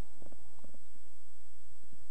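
A pause in speech filled by a steady low hum, with a few faint soft clicks.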